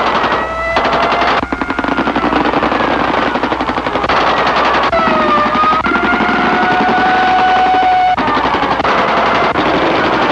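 Rapid machine-gun fire in long bursts broken by short pauses, over a wailing siren-like tone that slides down and back up.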